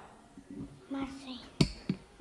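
A child's short vocal sound about a second in, then two sharp clicks close together near the end, the first the louder.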